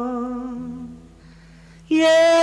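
Tamil film song music: a long held note with vibrato fades out over the first second, leaving a faint low tone. Then a loud new held note comes in suddenly just before the end.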